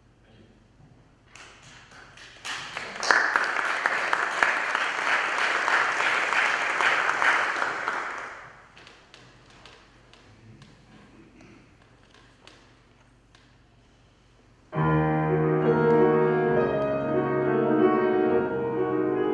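Audience applauding for several seconds, then a short lull with a few small knocks. About fifteen seconds in, a grand piano starts playing a slow classical piece.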